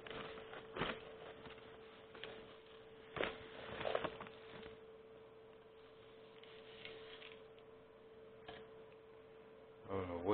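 Faint steady hum of one pitch, with a few soft knocks and rustles of potting soil being handled and added into a plastic bucket around a plant.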